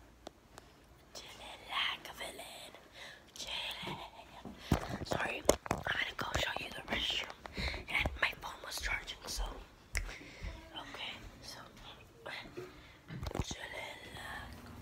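Children whispering to each other, with a few sharp knocks about five seconds in and again near the end.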